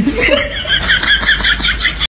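High-pitched laughter, a quick, even run of short 'ha's at about six a second.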